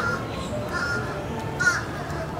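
A few short caws from crows over the steady sound of rain.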